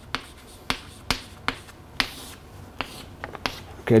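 Chalk tapping on a chalkboard while writing: a series of sharp clicks, about two a second, each stroke striking the board.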